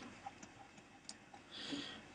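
Faint, scattered ticks of a plastic stylus tip tapping on a tablet screen while writing, a few clicks across the two seconds, with a soft hiss shortly before the end.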